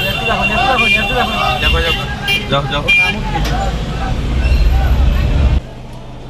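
People talking over a low rumble that builds in the second half, then the sound drops off abruptly shortly before the end.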